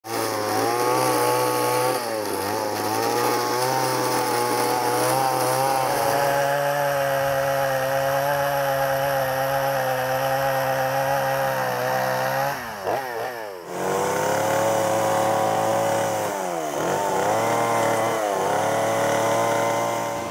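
Two-stroke chainsaw running at high revs as it carves into a silver maple trunk. Its revs drop and pick up again a few times in the second half.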